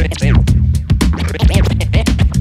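Hip-hop turntable scratching: a record worked back and forth by hand, cutting short sounds that sweep up and down in pitch, over a beat with drums and a steady bass line.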